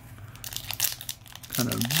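Foil wrapper of a Yu-Gi-Oh! booster pack crinkling as it is pulled and torn open by hand, a quick run of crackles for about a second and a half.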